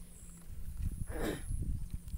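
A pause in a man's speech, filled with low rumbling noise and one short rushing sound about a second in.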